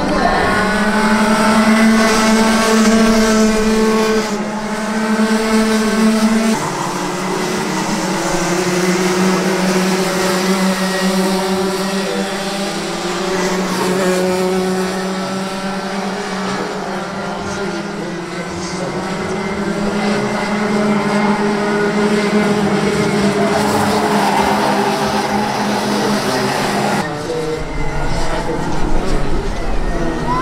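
Several Rotax Max 125cc single-cylinder two-stroke kart engines running at racing speed as karts lap the circuit, a steady high buzz whose pitch rises and falls slowly. The sound changes abruptly about six and a half seconds in and again near the end.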